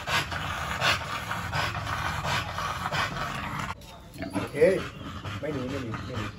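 A large dog panting rapidly, about three breaths a second. After a sudden break near the end, a few short pitched vocal sounds follow.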